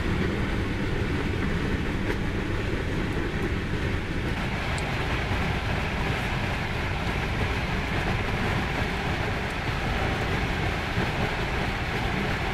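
Steady rumble and rolling noise of a moving passenger train, heard from inside the coach of the Snälltåget sleeper train.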